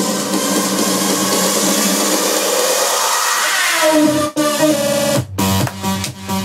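Electronic dance music being mixed live by a DJ: the bass drops out, a falling sweep leads into two brief breaks, and a little after five seconds in the beat comes back in with full bass.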